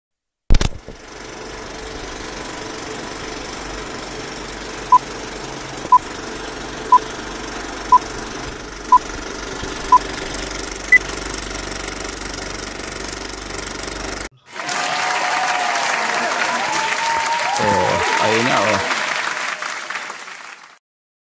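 An old-film intro sound effect: a click, then a steady crackling hiss with a low hum, over which six short beeps sound one second apart, followed by one higher beep. Partway through it cuts out, and a louder noisy passage with sliding tones follows.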